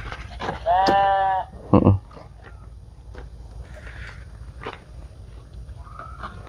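A single drawn-out animal call, steady in pitch and lasting under a second, about a second in, followed shortly by a short low thump.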